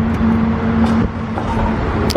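Renault Duster being started: the starter motor cranks with a steady whine over a low rumble, and the engine catches and runs near the end.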